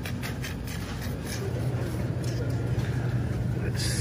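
Steady low hum of supermarket refrigerated display cases and store background noise, with a few faint clicks.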